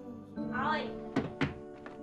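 Soft background score with sustained tones, a short vocal sound about half a second in, then two sharp thunks in quick succession a little after a second in.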